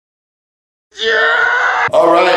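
Dead silence for about the first second, then a man's loud, drawn-out vocal sound held on a fairly steady pitch, with a brief break just before the end.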